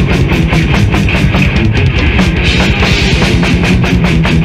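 Death/thrash metal playing: rapid, evenly spaced drum kit hits driving under a steady wall of distorted guitar and bass.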